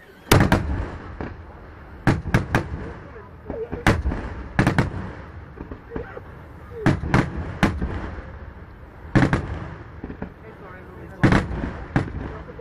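Aerial firework shells bursting, sharp loud bangs coming in clusters of two or three every second or two, each followed by a low rolling rumble.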